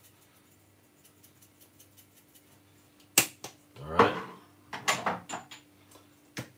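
Crushed chilli flakes shaken from a spice jar into a glass bowl: a run of faint light ticks, then one sharp click about three seconds in, with a few softer clicks after.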